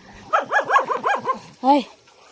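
A dog yapping: a quick run of about six high, short yips, then one lower yap near the end.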